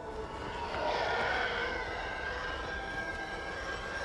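A rushing, wind-like noise with a thin, steady high tone that sets in about a second in, like a distant starfighter closing in over open ground.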